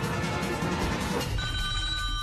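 Background music, then about one and a half seconds in a steady electronic telephone ring starts, signalling an incoming caller on the line.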